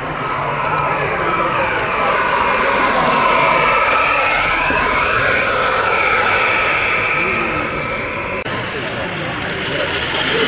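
OO gauge model train running past close by: a motor whine with wheel noise on the track that rises and falls as it passes, over the chatter of a crowd.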